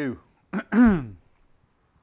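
A man clears his throat once, a short voiced "ahem" about half a second in.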